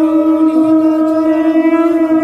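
Conch shell (shankha) blown for the aarti in one long, steady, loud note.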